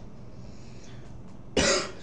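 A man's single loud cough about one and a half seconds in, over a faint low steady hum.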